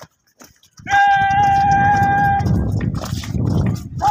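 A long, drawn-out shouted drill command held on one high, steady note for about a second and a half, starting about a second in, over a loud low rumble that continues to the end.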